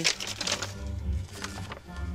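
Soft background music underscore of sustained low notes, with a couple of faint light clicks.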